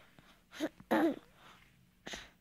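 A baby-like voice making two short throaty coos in quick succession, about half a second and a second in.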